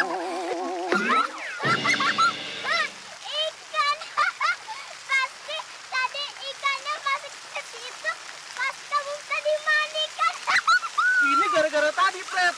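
A brief wobbling sound effect and a held tone in the first three seconds, then a young girl giggling in many short, high bursts.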